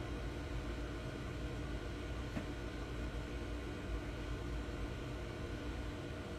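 Steady background hiss with a low hum: room tone on a phone microphone, with one faint click about two and a half seconds in.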